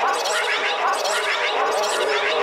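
Dark psytrance (darkpsy) track: a dense run of fast, chirping synth glides in the middle and upper range, with little bass and no steady kick drum.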